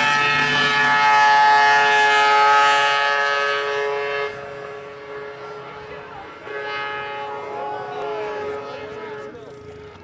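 Yamaha 700 triple snowmobile's three-cylinder two-stroke engine held at high revs with a steady, high-pitched note as the sled skims across open water. About four seconds in it drops away and fades, the pitch wavering near the end.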